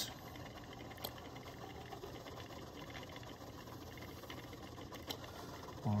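Magnetic stirrer running with its stir bar spinning in water: a faint steady hum, with two faint clicks, about a second in and near the end.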